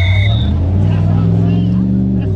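A motor vehicle's engine running loud and low, its pitch rising slightly.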